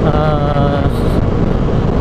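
Benelli 150S single-cylinder 150 cc four-stroke engine running steadily at cruising speed, mixed with wind rushing over the microphone; the rider finds the engine a bit noisy.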